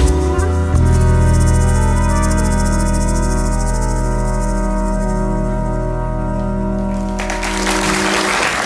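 A live band's final chord, held and slowly dying away, with a rapid shimmering cymbal roll above it. Applause breaks out near the end.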